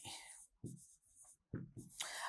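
Faint scratching of a stylus writing on a tablet screen, with a couple of brief, faint voice fragments.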